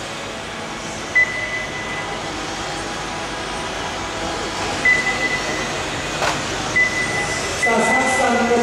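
Steady running noise of 1/12-scale electric RC touring/pan cars racing on an indoor carpet track. Four short electronic beeps at one high pitch sound over it, the timing system's lap-count beeps as cars cross the line.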